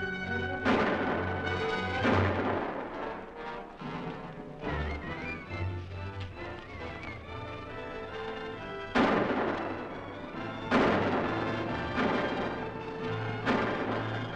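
Four gunshots in a film shootout: two about a second apart near the start and two more about two seconds apart late on, each with a short ringing tail, over a dramatic music score.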